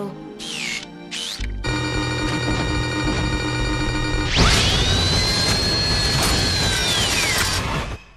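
Animated robot-creature sound effects over dramatic score: a Scraplet gives two short falling chirps, then a loud mechanical whirring sets in. About four and a half seconds in, a high whine rises, holds and then falls away, and the sound cuts off abruptly near the end.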